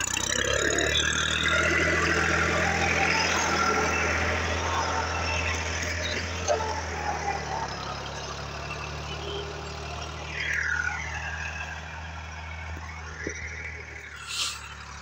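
Case IH JX50T tractor's diesel engine running steadily under load while it drives a rotary tiller through the soil, growing quieter about halfway through as the tractor moves away.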